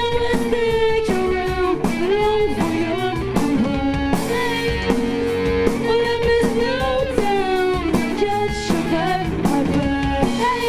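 Three-piece grunge rock band playing live: electric guitar, bass guitar and drum kit, with a woman singing held notes.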